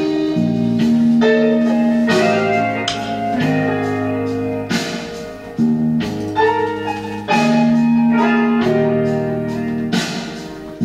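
Alto saxophone played by a beginner, blowing held blues notes over a backing track with guitar.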